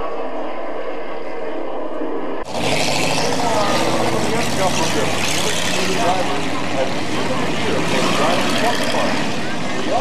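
Street stock race cars' engines running as they roll around an asphalt oval, heard through a camcorder microphone with people talking close by. It starts abruptly about two and a half seconds in, after a steady hum.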